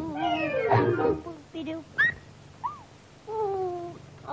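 Old cartoon soundtrack: a voice-like sound in short sliding glides, with a quick rising squeak about two seconds in and a held, slowly falling tone near the end.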